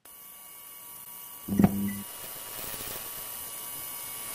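Electrical hum and hiss of a neon sign switching on, with a click and a short buzz about a second and a half in, then a steady hum that grows slightly louder.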